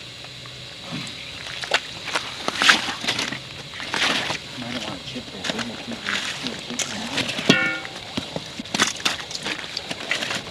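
Broken ice chunks and slush splashing and knocking in a hole cut through lake ice as it is worked by hand, in a string of short irregular bursts, with faint murmured voices.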